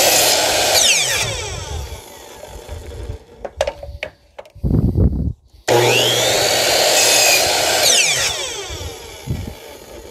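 Electric miter saw making two angled cuts to point a one-by-two wooden stake. The first cut ends about a second in and the blade winds down. After a few knocks as the piece is turned, the motor starts again with a rising whine about halfway through, cuts for about two seconds, and winds down near the end.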